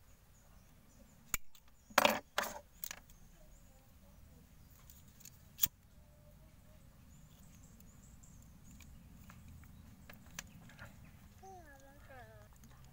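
Small metal scissors snipping the ends of a nylon cord and clinking as they are handled and set down, a few sharp clicks about two seconds in, then a single click of a disposable flint lighter being struck about halfway through. Between these there is only low room tone.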